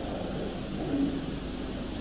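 Steady background hiss and low hum of an old recording, in a pause between a man's spoken sentences; no distinct sound event.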